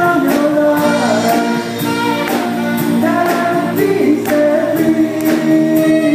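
Live worship band playing a song: a woman singing sustained lead notes over electric guitar, bass guitar and drums, with cymbal strokes about twice a second.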